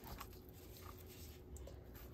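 Faint soft clicks and rustles of a knife and plastic-gloved hands skinning raw chicken pieces on a plastic cutting board, over a low steady room hum.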